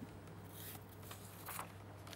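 Faint rustling of paper sheets being handled, a couple of soft brushes, over a low steady hum.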